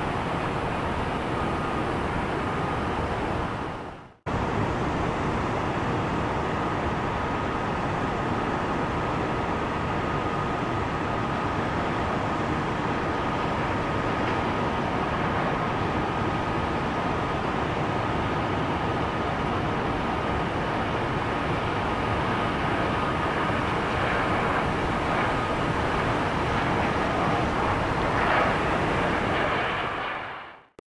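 Jet aircraft on the runway heard from outside the airfield: a steady rush of engine noise with a thin high whine running through it. It cuts out sharply for a moment about four seconds in. First it is a Pilatus PC-24 business jet, then a Southwest Boeing 737.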